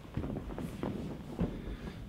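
Soft thuds and shuffling of a person getting down onto a foam gym mat and sitting, with a few light footsteps.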